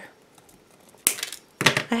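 Small wire cutters snipping through a metal ball chain: one sharp click about a second in, followed by a few lighter metallic clicks.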